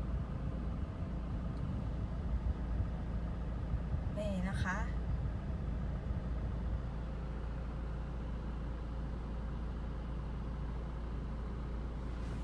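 Toyota Fortuner's 2.4-litre four-cylinder turbo-diesel idling, heard from inside the cabin: a steady, low, even hum, running very smoothly.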